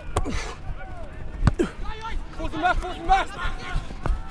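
Players shouting calls across a football training oval, with a dull thud as the Australian rules football is caught just after the start and another thud about a second and a half in.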